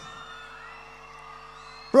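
Quiet audience cheering with a faint whoop, over a steady held tone from the stage sound system.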